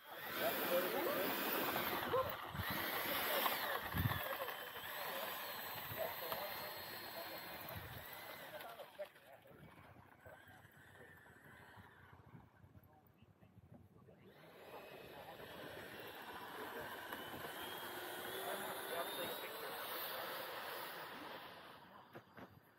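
Electric ducted fan of a Freewing Mirage 2000 RC jet whining. In the second half, after a quieter lull, the whine rises steadily in pitch over several seconds as the jet powers up for its takeoff run.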